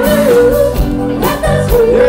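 Live band playing a funk-disco number: a singer holds long, wavering notes over a steady drum beat and bass line.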